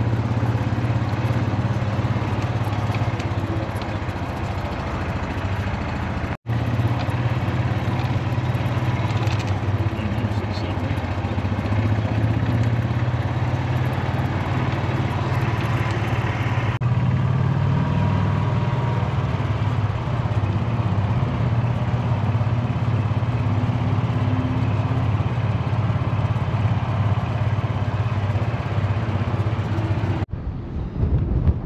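A motor vehicle's engine running steadily with a low drone, broken by a brief gap about six seconds in.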